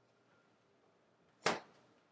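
Faint room tone, broken about one and a half seconds in by a single short, sharp sound that dies away quickly.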